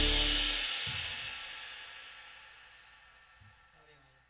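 The song's final cymbal crash and held chord dying away: the chord cuts off under a second in and the cymbal wash fades steadily to near silence.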